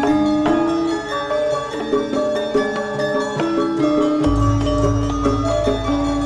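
Javanese gamelan playing an instrumental passage: many struck metal keyed instruments ringing in quick, layered notes. About four seconds in, a deep low tone comes in and holds.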